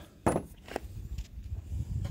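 Steel post-driver attachment handled against wooden planks: a short knock about a third of a second in and a fainter one shortly after, over a low rumble.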